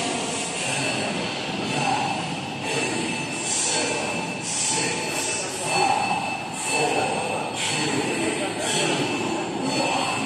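Indistinct voices over a steady rushing background noise.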